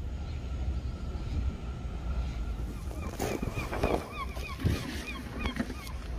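A bird calling in a quick run of short, evenly repeated notes, about three or four a second, through the second half, over a steady low outdoor rumble.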